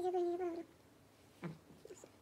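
A cat meowing: one drawn-out meow about half a second long at the start, then a short, fainter call about a second and a half in.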